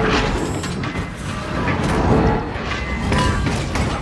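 Action film soundtrack: dramatic score under repeated crashes and booms of a battle, with the loudest hits near the start and about two seconds in.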